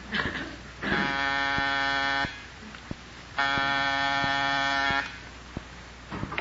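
Door buzzer sounded twice, two long steady buzzes of about a second and a half each, as a radio sound effect.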